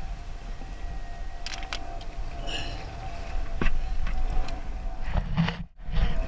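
Wind rumbling on the microphone with water and boat noise, a faint steady hum under it and a few light clicks. The sound drops out briefly near the end.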